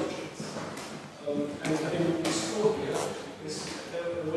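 Indistinct talk of people standing around in a room; no words come through clearly.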